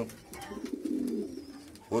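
Racing pigeons cooing in the loft: a low, wavering coo lasting about a second.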